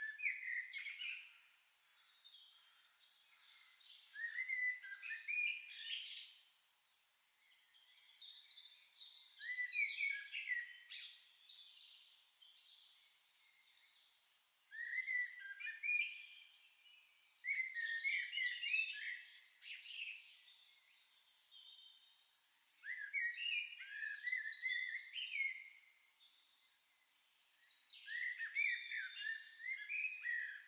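Songbirds singing, with short phrases of chirps and quick rising and falling whistles repeating every few seconds.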